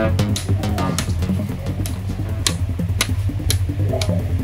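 Background music with a steady bass line and drum hits.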